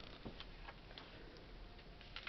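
Faint, sparse light ticks and rustles of small paper cut-out cards being handled and sorted by hand on a table.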